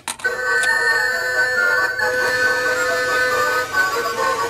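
Toy claw machine playing its electronic game tune, a thin chime-like melody of held beeping notes, starting with a click just as the game is set going.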